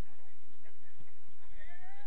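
A short, high-pitched cry whose pitch rises and falls, near the end, over distant voices.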